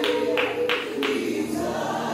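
Group of voices singing a held gospel chord, with four sharp strikes about a third of a second apart in the first second, then the singing fading.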